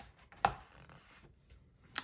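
A sketchbook page being turned and pressed flat, with one sharp tap about half a second in and fainter paper sounds at the start and near the end.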